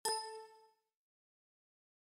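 A single Windows system chime: a bright ding of several ringing tones that fades out within about a second.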